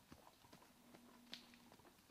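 Faint hoofbeats of a young Hanoverian horse walking on a dirt woodland trail, irregular soft clops with one sharper click a little over a second in.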